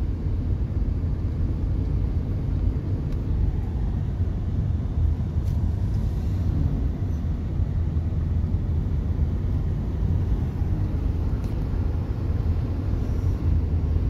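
Steady low road and engine rumble of a vehicle driving along a highway, heard from inside the cabin.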